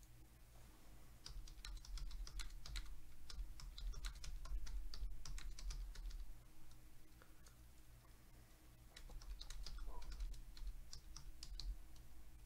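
Typing on a computer keyboard: two runs of quick key clicks, the first in the first half and the second near the end, over a low steady hum.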